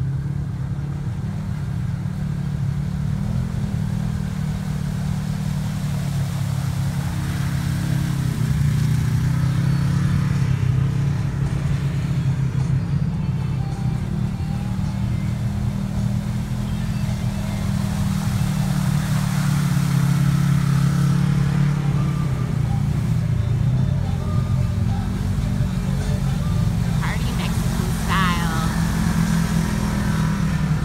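Side-by-side UTV engine running and revving, rising and falling in pitch as the machine churns through a flooded, muddy arroyo, with water and mud splashing around its wheels.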